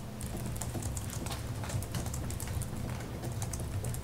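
Irregular light clicking of typing on a computer keyboard, over a low steady room hum.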